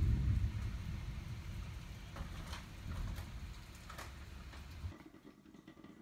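Heavy rain pouring during a thunderstorm, with scattered drip ticks and a low rumble that swells at the start and slowly fades. It cuts off about five seconds in.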